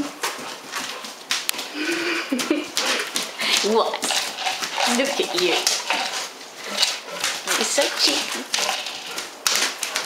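A woman talking to a dog in a playful, teasing voice, among frequent sharp clicks and knocks from the dog's teeth and the tube toy she is chewing.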